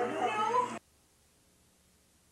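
A high vocal sound whose pitch glides up and down cuts off abruptly under a second in, leaving near silence: an audio dropout at a videotape edit or glitch.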